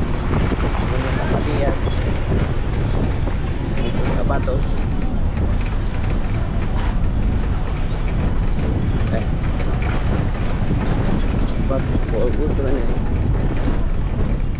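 A passenger minibus driving through town: a steady low rumble of engine and road noise, with wind buffeting the microphone at the open window. Short snatches of voices come through a few times.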